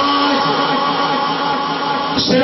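A man's voice holding one long, steady chanted note, in the drawn-out style of devotional recitation.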